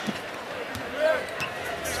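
A basketball being dribbled on a hardwood court, with a low arena crowd murmur and a brief faint voice about a second in.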